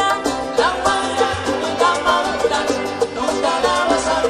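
A small Cuban folk band playing live in salsa style. A violin plays a sliding melody over strummed acoustic guitars and a steady rhythm.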